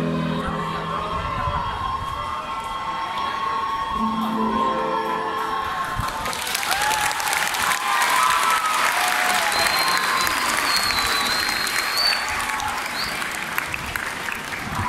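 The last sung notes of a group song die away, and about six seconds in an audience starts applauding and cheering, with high calls over the clapping.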